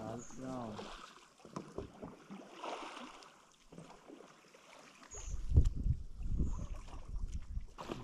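Wind buffeting the microphone, a low irregular rumble in gusts that starts about five seconds in and is the loudest sound here. Before it, a voice calls out briefly at the very start, followed by a few faint clicks.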